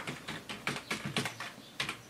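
Computer keyboard keys clicking in quick, uneven strokes, about five a second: a user name and password being typed at a text-mode Linux login prompt.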